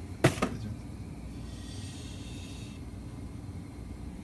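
Two quick sharp knocks a moment in, then the steady low bubbling of pasta boiling in a pot of water on a gas burner.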